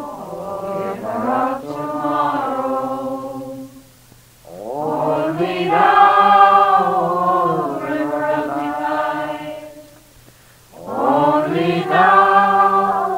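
Slow devotional chant sung in long held phrases, with short breaks about four seconds in and again about ten and a half seconds in.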